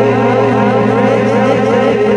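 Album music: a steady low drone under layered, siren-like warbling tones that wobble up and down about four times a second.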